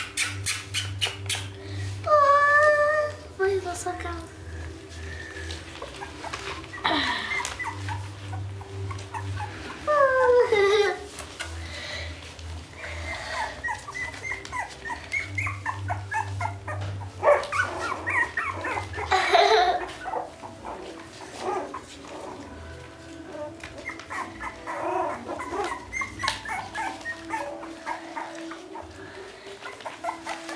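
Young beagle puppies whining and yelping, several high cries that slide down in pitch and repeat on and off.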